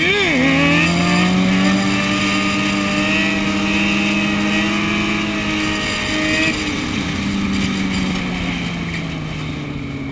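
Sport motorcycle engine revving up sharply as a wheelie begins, then held at steady high revs for several seconds. About six and a half seconds in the revs dip briefly, then settle lower and fade near the end.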